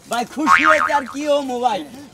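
A man speaking in Bengali in a short, exclaimed phrase, his voice rising high and wavering about half a second in.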